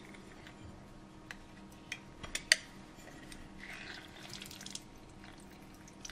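Faint kitchen handling with a handheld citrus press: a few light clicks in the first half, then a soft spell of dripping a little over halfway as juice is squeezed into a glass baking dish.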